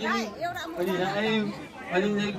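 Voices only: a man's voice into a handheld microphone, with a small crowd chattering around him.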